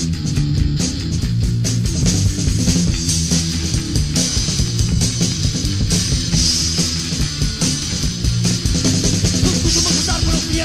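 Punk rock band recording: electric guitar, bass and drum kit playing together at a steady, loud level.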